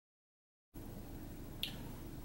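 Dead silence at an edit, then faint room tone from about three-quarters of a second in, with one small sharp click about a second and a half in.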